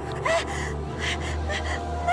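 A young woman gasping and crying out in short breathy bursts, a few cries rising and falling in pitch, over a low droning music bed. The cries are typical of a character shown as crazed or possessed.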